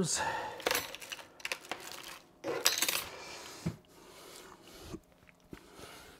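Thin metal PCI slot covers clinking against each other as they are handled and set down, in a string of short sharp clicks with a cluster of clinks about two and a half seconds in.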